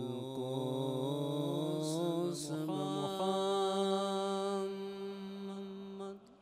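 A man's voice chanting in Arabic in a melodic recitation style, wavering through ornamented turns and then holding one long steady note for the last few seconds.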